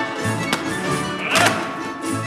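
Russian folk music from a folk choir's ensemble, with a steady beat about twice a second and sharp knocks cutting through it, the loudest about one and a half seconds in.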